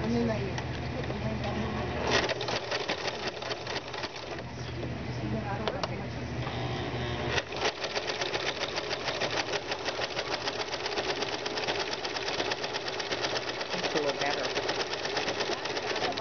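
Baby Lock BL9 sewing machine stitching with a ruffler foot set to six, pleating the fabric every six stitches. Fast, even ticking of the needle and foot, first in short runs, then steady from about halfway through.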